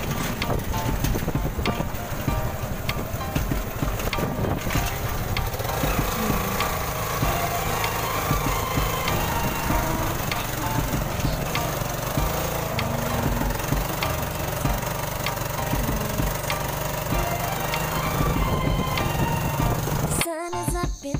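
Small motorcycle engine of a tricycle running steadily under way on a rough dirt road, with wind buffeting and the sidecar frame rattling.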